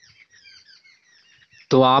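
Faint chirping of small birds: many quick, high, short calls overlapping one another, until a man's voice cuts in near the end.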